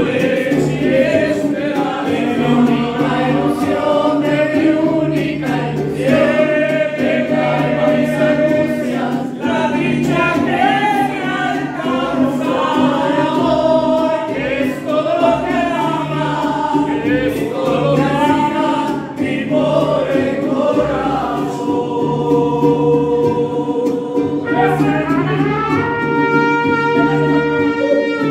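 Mariachi band: several men singing a song together over strummed guitars with a steady bass. Near the end the singing gives way to held trumpet notes.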